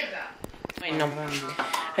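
Kitchenware clinking several times in quick succession about half a second in, followed by a voice talking.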